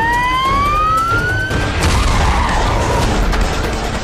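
News programme closing logo sting: a rising synthesized sweep tone that climbs steadily for about the first one and a half seconds, then gives way to a whooshing swell over the closing theme music.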